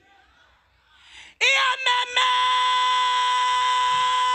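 A praise poet's voice in performance: after a second-long near-silent pause she cries out, then holds one long, high, steady note from about two seconds in.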